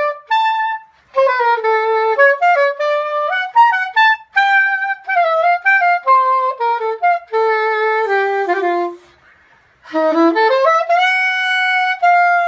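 Soprano saxophone playing a jazz melody alone, one line of phrases moving stepwise up and down. The line descends to a low note and breaks off for about a second near nine seconds in, then slides up into a long held note.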